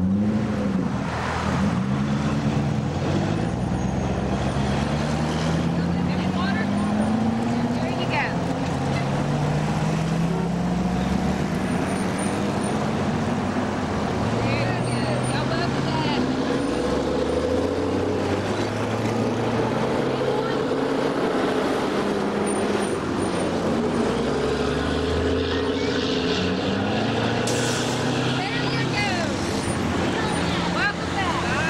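A line of Chevrolet Corvettes with V8 engines drives past one after another at low speed. The engine notes rise and fall in pitch as each car comes by and moves off, overlapping with no break.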